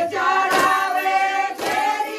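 A chorus of women singing a Chhattisgarhi Sua song (sua geet) together, with sharp handclaps landing about once a second in time with the song.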